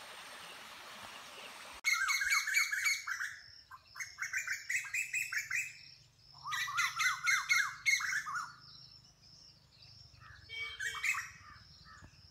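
A shallow stream running over stones, cut off abruptly about two seconds in. Then birds call in three bouts of rapid, repeated rising-and-falling notes, each about two seconds long, and a shorter bout comes near the end.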